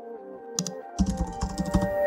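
Computer keyboard typing sound effect: a fast run of key clicks that starts about halfway through, with a couple of clicks just before it. Soft background music with a simple melody plays under it.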